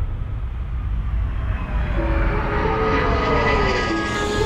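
Film sound effect of a craft flying through the sky: a heavy, steady engine rumble with rushing air building up, and a whine falling in pitch over the last second and a half.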